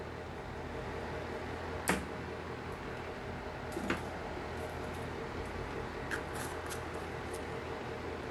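Quiet room tone with a steady low hum, broken by a few small clicks and taps of objects being handled, the sharpest about two seconds in.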